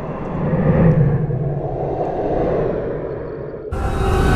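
A low, noisy rumbling whoosh sound effect that swells about a second in and then eases off, followed near the end by a sudden, louder and brighter rushing noise.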